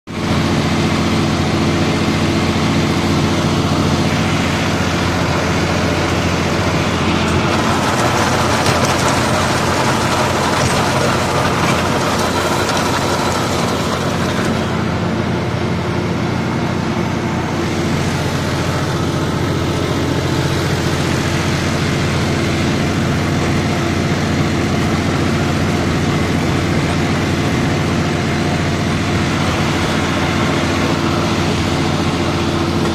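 Diesel engine of a new John Deere 5075E tractor running steadily, heard from the driver's seat, with a steady low engine hum throughout.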